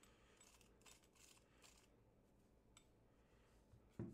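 Near silence, with a few faint clicks and light rustles from a 3D-printed plastic caster housing and its wheel being handled.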